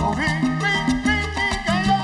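Salsa band playing, with a walking bass line of held low notes, piano, percussion and horn lines.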